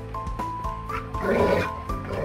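Background music with a simple stepping melody, and about a second in a Jindo dog gives a short, rough vocalization that stands out above it.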